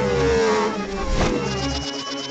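Cartoon sound effects: an engine-like pitched tone sliding down in pitch, a sharp whoosh about a second in, then a thin high steady tone.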